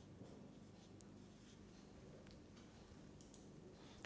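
Faint felt-tip permanent marker strokes on paper, a few light scratches and ticks as a chemical formula is written, over near-silent room tone.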